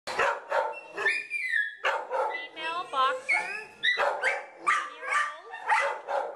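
Dogs barking over and over, roughly two barks a second, with a couple of high, gliding whines in between.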